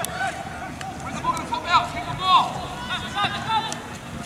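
Children's voices shouting and calling out in short rising-and-falling cries over a background of voices. A few short sharp knocks come in between.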